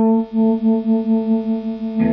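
Electric guitar played through a Ceriatone Jubilee 2550 valve amp head with overdrive, letting one note ring on. The note dips briefly about a quarter-second in, then rings on, wavering in level about five times a second.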